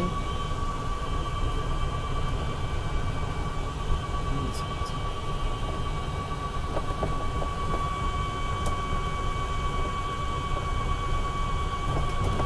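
GEM E4 electric car driving up a hill, heard from inside the open cab: a steady low rumble of tyres and drivetrain with a thin, steady high whine.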